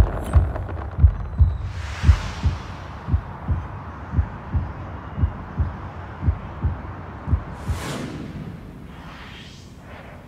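Soundtrack of a promotional animation: a deep thumping beat, about three thumps a second, with a whoosh about two seconds in and another near eight seconds. After the second whoosh the beat stops and the sound fades away.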